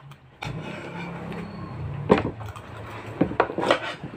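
Water poured from a plastic jug into a plastic tumbler, starting about half a second in. It is followed by sharp knocks of a cup, jug and dishes set down on a table, once at about two seconds and three times near the end.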